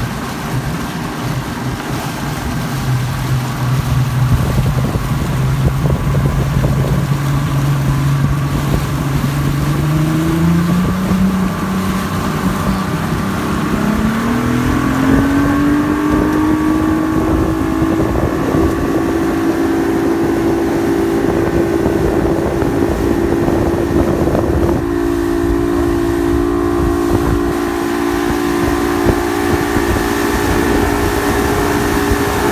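Motorboat engine speeding up. Its pitch climbs steadily about halfway through, then holds at a higher, steady running speed. Rushing water and wind noise run underneath.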